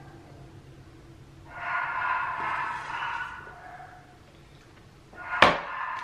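Dogs barking in another room, heard muffled for about two seconds in the middle. Near the end there is a sharp knock as a plastic bottle is set down on a desk.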